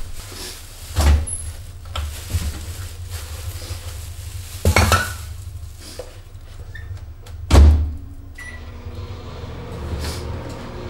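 Kitchen items being handled and set down: three loud knocks, about a second in, just before five seconds and near eight seconds, with a few lighter clicks, over a low hum.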